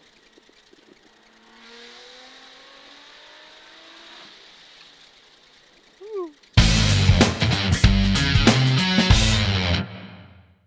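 Faint engine and cabin noise inside a Nissan GT-R R35 with its twin-turbo V6, with a few tones slowly rising in pitch. About six and a half seconds in, loud music with a strong beat starts suddenly and becomes the loudest sound.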